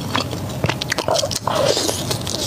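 Close-miked eating: wet chewing with sharp mouth clicks and smacks, then a bite into a sauce-glazed sausage near the end.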